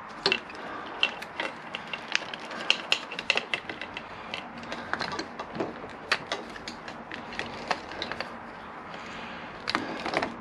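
Irregular light clicks and knocks of a motorcycle's plastic left-hand switch gear being worked loose and handled on the handlebar clip-on.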